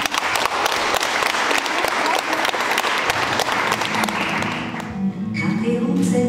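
An audience applauding, the clapping fading out about four to five seconds in. An acoustic guitar then starts playing near the end.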